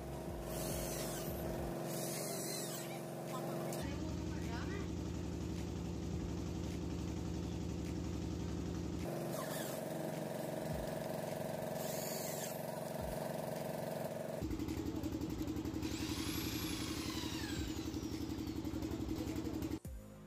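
Corded electric hand drill running as it bores into a polished wooden table top. The motor note is steady, jumping to a different steady pitch about four, nine and fourteen seconds in.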